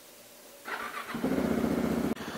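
KTM 690 Enduro R single-cylinder engine being started: the starter cranks briefly and the engine catches about a second in, then runs steadily through its Wings titanium exhaust.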